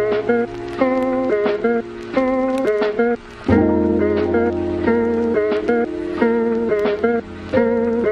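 Background music: a guitar-led track with plucked, changing notes over a sustained bass.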